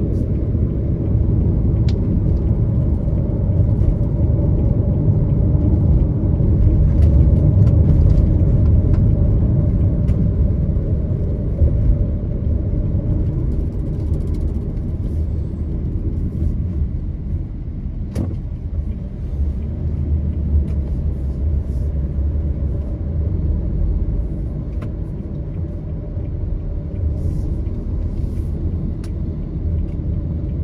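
Steady low road rumble inside a moving car's cabin, engine and tyres together, a little louder in the first third and easing off later. A single sharp click a little past halfway.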